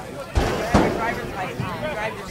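Background chatter of spectators' voices, with two short low thumps about a third and three quarters of a second in.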